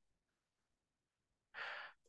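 Near silence, then a short audible breath from a man near the end.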